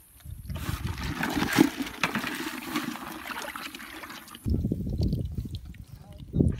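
Muddy water sloshing and splashing in a small dug hole as hands work in it. About four and a half seconds in, this gives way abruptly to a lower, rougher noise.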